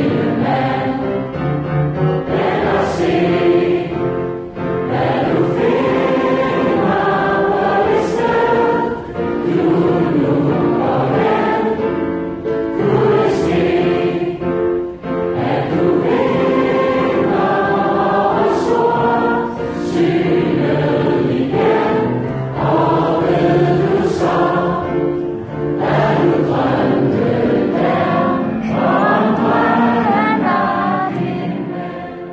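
A hall full of people singing a song together from projected lyrics, phrase after phrase with short breaks between lines.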